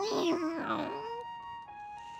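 An animated cat meowing once: a drawn-out call of about a second that wavers in pitch. It sits over background music with held notes.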